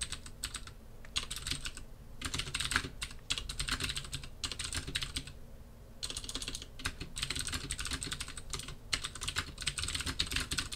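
Typing on a computer keyboard: quick runs of keystrokes in bursts, with a pause of about a second just past the middle.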